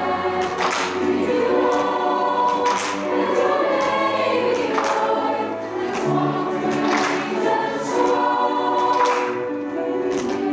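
A mixed choir of high school boys and girls singing in parts, with several voices holding sustained notes together.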